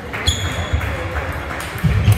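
Table tennis ball played in a rally: a sharp ringing ping about a quarter second in and a few lighter clicks, with low thuds of players' feet on the hall floor, heaviest near the end.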